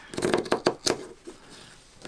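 Scissors cutting through hessian (burlap) backing fabric: a quick run of crisp snips in the first second.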